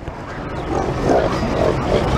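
A crowded pen of young pigs grunting, a run of rough grunts in quick succession from just under a second in.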